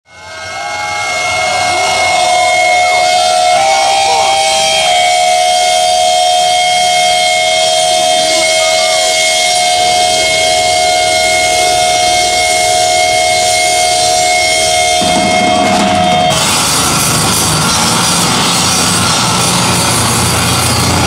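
Heavy live band opening its set: a steady drone of held high notes over a wash of noise fades in over the first two seconds. About sixteen seconds in, the full band comes in loud with drums and distorted guitar.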